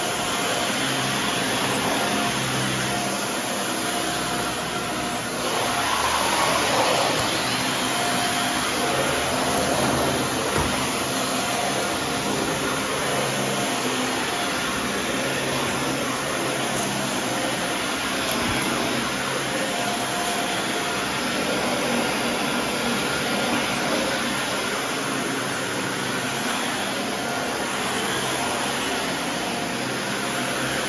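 Upright Dyson vacuum cleaner running steadily as it is pushed back and forth over carpet, with a brief louder swell about six seconds in.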